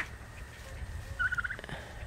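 Young turkey calling: a brief, quick run of high peeping notes about a second in, quiet against the farmyard.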